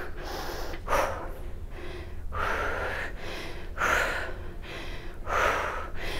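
A woman breathing hard through the nose and mouth during dumbbell deadlifts, a forceful breath about every second and a half.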